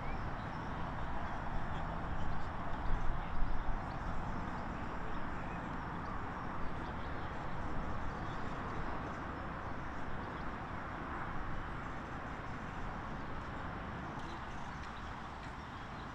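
Outdoor ambience at a football training pitch: a steady hiss with low rumbling and a few faint scattered knocks, louder for a moment about two to four seconds in.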